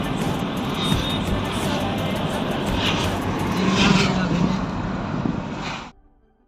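Road and engine noise heard inside a moving vehicle cabin at highway speed, a steady rumble. Faint voices or music mix in, and the sound cuts off abruptly near the end.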